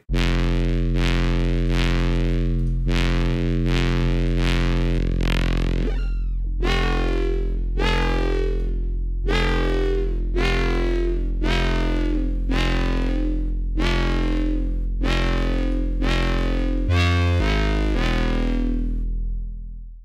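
Heavily distorted FM 'foghorn' bass patch from the Vital software synth, sounding very fog-horny: a held low bass note with a bright, buzzy burst about once a second that sweeps down in pitch as an envelope closes the FM amount. Its tone changes about six seconds in as the oscillator warp is switched, and the low note shifts briefly near the end.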